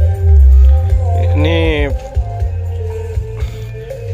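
Music played loud through a sound-check rig of four single subwoofer boxes, with heavy bass from the subs. A singing voice comes in briefly about a second and a half in.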